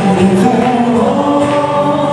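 Live bluegrass band with fiddle, mandolin, banjo, acoustic guitars and bass, several voices singing together in harmony over a steady acoustic accompaniment.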